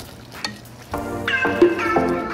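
Wooden spatula stirring a simmering chicken and vegetable stew in a pot, faint scraping and sloshing. Background music comes in about a second in and is the loudest sound from then on.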